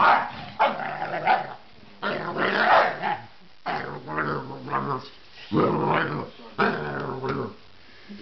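Basset hound play-growling: a series of about six low growls, each under a second long, with short breaks between. It is playful vocalising, not aggression.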